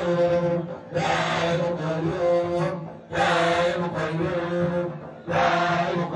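A large crowd of voices chanting dhikr in unison, the same short phrase repeated about every two seconds with a brief pause between repeats.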